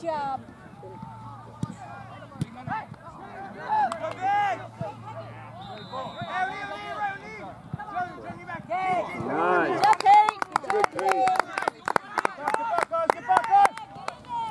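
Distant voices of players and spectators calling out across a soccer field, then a quick run of sharp claps close to the microphone, about three or four a second, for a few seconds near the end.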